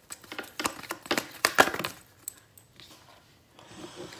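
Tarot deck being shuffled by hand, a quick run of card snaps and taps for about two seconds, then softer handling of the cards as one is drawn.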